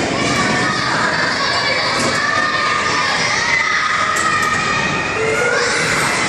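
Many children's voices shouting and playing at once, a steady din of overlapping chatter and calls echoing in a large indoor hall.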